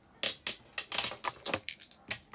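A quick, irregular run of sharp clicks and taps close to the microphone, like small hard objects being picked up and set down.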